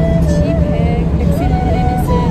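Steady low rumble of a moving bus heard from inside the cabin, with a song playing over it, its melody moving in steps and holding notes.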